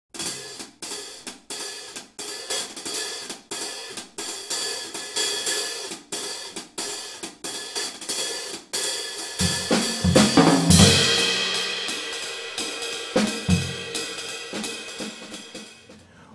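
Drum kit playing an intro: a steady beat of cymbal and snare strokes, then low drum hits about halfway through and a crash cymbal that rings out and fades, with a few more drum hits near the end.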